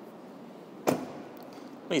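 A 2016 Dodge Grand Caravan's front passenger door is shut once, a single sharp slam about a second in, over a faint steady background hiss.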